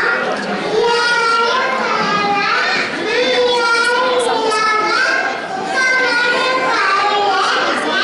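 Small children's high-pitched voices speaking into microphones, almost without pause.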